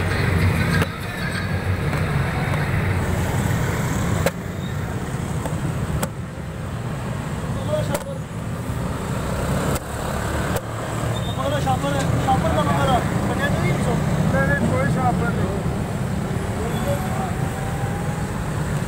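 Steady roadside traffic rumble with passing vehicles, and indistinct voices in the background.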